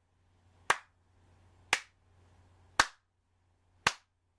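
Slow, single hand claps, four in all, evenly spaced about a second apart, over a faint low hum.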